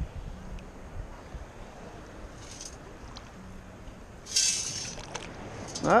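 Underwater metal detector, a Minelab CTX 3030, giving two short faint low tones as its coil is swept over a target still buried in the hole, over a steady hiss of water. About four seconds in, a short loud splash of water.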